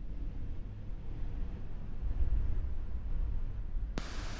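A low rumbling noise with a faint hiss above it, swelling and loudest about two seconds in, then dropping back near the end.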